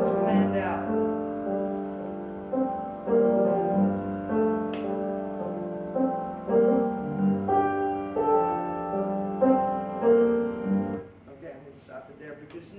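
Recorded solo piano played back through speakers: a slow improvisation of single struck notes over held chords, built on bird-song motifs such as the two-note sparrow song. It stops about eleven seconds in.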